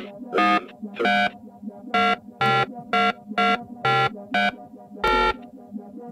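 A run of about ten short electronic telephone-style beeps at varying pitches, roughly two a second, like a number being dialled on a keypad. A steady low hum runs under them.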